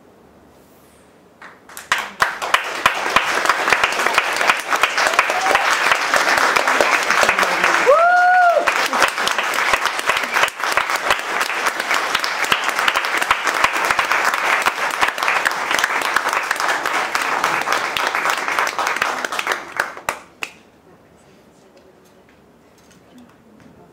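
Theatre audience applauding, starting about a second and a half in and dying away a little before the end, with one brief high call that rises and falls about a third of the way through.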